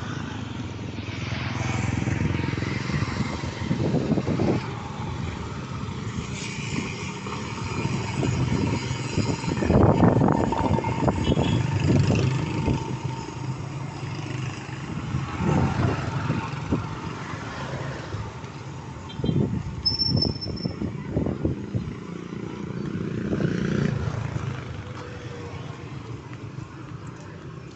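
Roadside street traffic: motorcycles and motorcycle tricycles passing one after another, with the loudest pass about ten seconds in.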